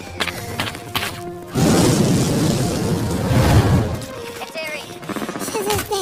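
Movie battle sound effects over a music score: a few sharp knocks, then a loud rumbling crash starting about a second and a half in and lasting about two seconds before dying down.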